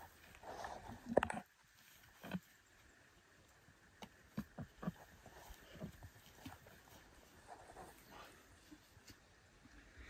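Footsteps and rustling through tall grass, with scattered short knocks as a downed bull elk's antlered head is handled; the loudest burst comes about a second in.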